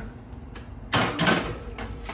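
Metal tray sliding onto the rack of a countertop oven, scraping for about half a second, with a short click before it and another near the end.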